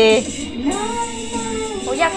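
A woman's voice singing: a short falling phrase, then one long held note that gently rises and falls before stopping near the end.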